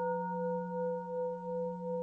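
Intro music: one sustained bell-like ringing tone with several steady overtones, wavering in loudness about twice a second.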